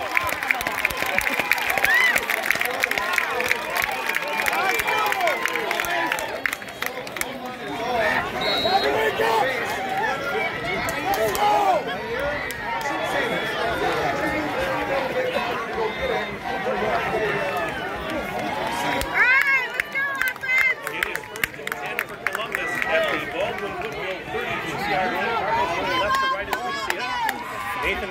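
Spectator crowd chatter: many overlapping voices talking and calling out, with no single voice standing out.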